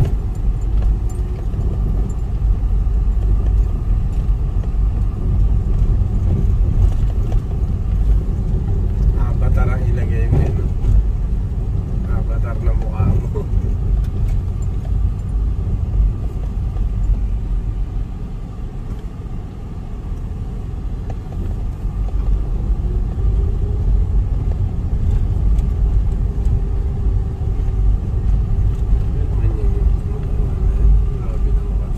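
Car engine and road noise heard from inside the cabin while driving: a steady low rumble that eases off briefly a little past halfway, then picks up again.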